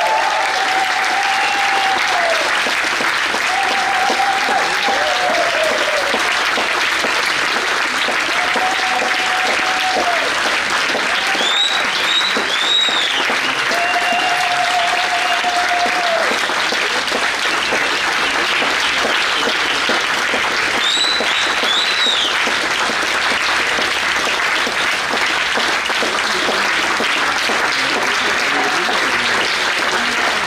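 Audience applauding steadily after a dance performance, with held calls from the crowd in the first half and a few high rising-and-falling whistles about twelve and twenty-one seconds in.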